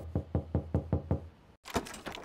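Rapid knocking on a door, about eight quick knocks in just over a second, followed by a few softer clicks near the end.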